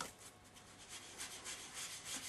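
Cut and dry foam block rubbing ink across embossed card stock, a faint soft scraping in repeated strokes, after a light knock at the start as the foam is pressed on the ink pad.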